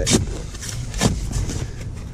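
A steel shovel scooping sand out from under a concrete sidewalk slab, with a sharp scrape about a second in, over a steady low rumble.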